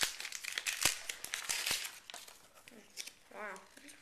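Wrapper of a 1988 Topps football sticker pack crinkling and tearing as it is ripped open by hand, busiest in the first two seconds and then dying down.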